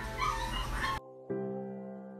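Pomeranian puppy whimpering and yipping over soft background music. About a second in, the live sound cuts off abruptly and only the music goes on, with a new note struck shortly after.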